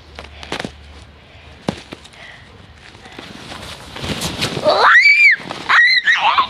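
A few soft scuffs and clicks of movement in snow, then a loud, high-pitched squeal that rises, peaks and falls, and a second short squeal near the end.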